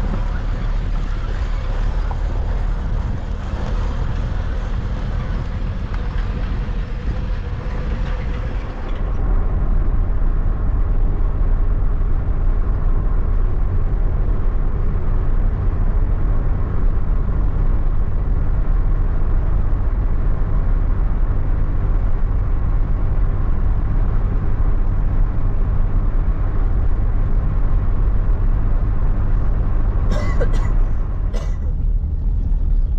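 Steady low rumble of a car driving on a paved road, heard from inside the vehicle. About nine seconds in the sound changes abruptly, becoming louder and duller.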